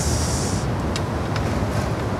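Steady background noise, a low rumble with a hiss over it. A brief higher hiss comes in the first moment and fades out.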